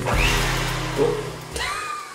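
Background music with sustained low notes and a bright wash that fades over about a second and a half, dying away near the end.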